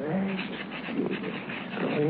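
A short wordless vocal sound from a cartoon character at the start, followed by light scratching as a pen writes on the register paper.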